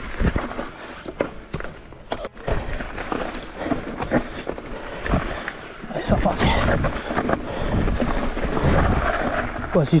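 Electric mountain bike (Mondraker Crafty R) descending a steep, rough dirt trail: tyres rolling over dirt and stones, with frequent knocks and rattles from the bike over bumps. It grows louder and rougher from about six seconds in.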